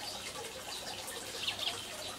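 Water running steadily from a hose nozzle into a plastic fish tank, with a few faint high chirps.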